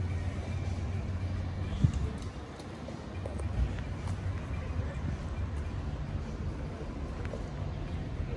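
Low, steady vehicle rumble on a street, with a sharp click just under two seconds in and a softer knock a little over three and a half seconds in.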